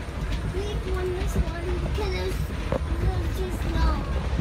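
Steady low rumble of a moving amusement-park ride, with a voice speaking or humming faintly over it.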